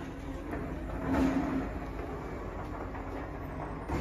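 Automated side-loading garbage truck's diesel engine running with a steady hum as its hydraulic arm sets an emptied cart down and pulls back, muffled through window glass; the sound swells briefly about a second in.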